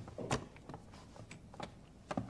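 Faint, irregular clicks and light knocks of a rifle being handled and its action worked by hand.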